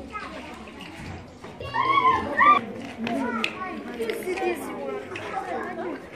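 Children's voices overlapping as a group of schoolchildren talk among themselves, with one child's high voice loudest about two seconds in.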